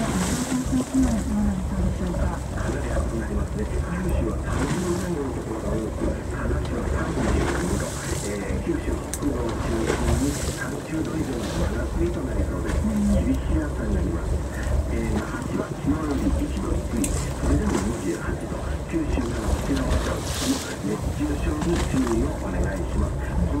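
Voices talking over the steady low rumble of a boat at sea, with wind and water noise on the microphone.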